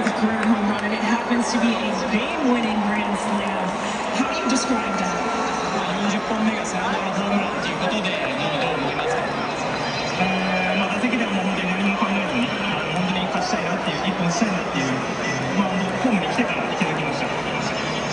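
A man speaking Japanese over a stadium public-address system, echoing through the ballpark, with crowd murmur and music underneath.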